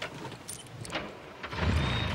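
A few sharp clicks and rattles, like keys in an ignition, then a vehicle engine starts about one and a half seconds in and keeps running with a low rumble.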